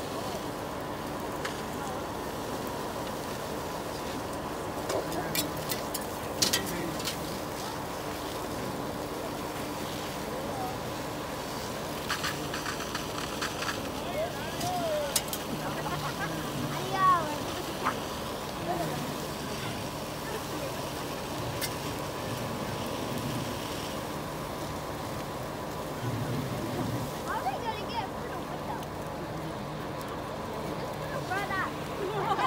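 A fully involved school bus fire being hosed down, over the steady hum of fire engines pumping water. Sharp pops and cracks come from the fire every so often, and distant voices call out now and then.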